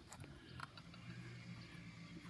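Near silence: faint background with a steady low hum and a couple of faint ticks.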